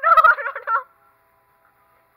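A woman's high-pitched squealing laugh, held on one wavering note, that breaks off abruptly under a second in.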